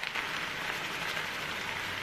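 Fried rice frying in a large skillet: a steady, even sizzle.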